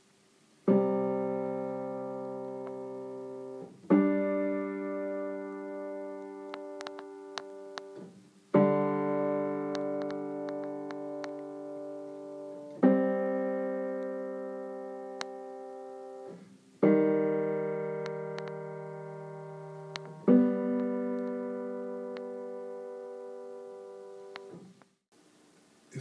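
Acoustic piano playing a series of six tuning-test intervals, each struck and left to ring and die away for three to four seconds before the next. The notes beat against each other as the intervals are compared by ear for aural piano tuning.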